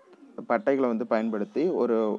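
A voice speaking, continuous narration after a brief pause at the start.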